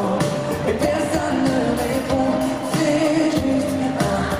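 Live pop song by a band: a male lead vocal sung into a handheld microphone over drums and backing instruments with a steady beat.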